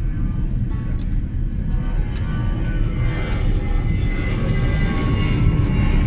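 Loud, steady jet-aircraft rumble that comes in suddenly, heaviest in the low end, with faint ticks through it and music underneath.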